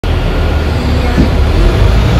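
City bus cabin noise while riding: a steady low engine and road rumble.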